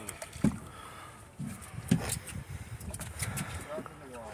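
Water lapping and slapping against the hull of a small boat drifting at sea, with a few short knocks.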